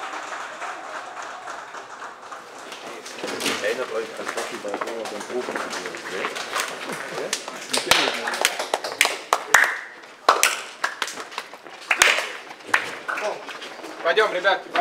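Men's voices chattering, with a run of sharp hand slaps and claps from about halfway through as players and staff slap hands and shake hands in turn.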